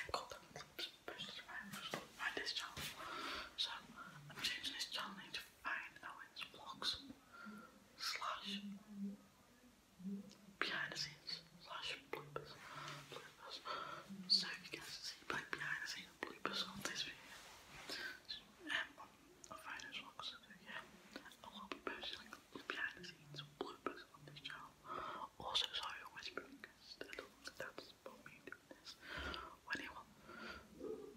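A boy whispering close to the microphone almost without pause, with only a few brief voiced sounds.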